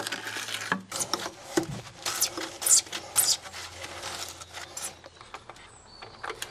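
Irregular short plastic scrapes, rubs and clicks from PVC conduit and its fittings being handled and pushed into place, with a few longer scrapes in the middle.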